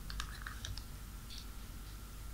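Faint small clicks and ticks of a metal scissor tip working against the plastic case and rubber cable strain relief of a Microsoft Surface Pro charger as the strain relief is pushed back into its hole. The clicks are clustered in the first second, with one more a little after the middle.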